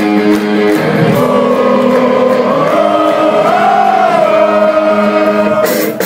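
Hardcore punk band playing live: held distorted guitar chords with voices singing a wavering melody over them, and the drums and cymbals crash in near the end as the full band kicks into the song.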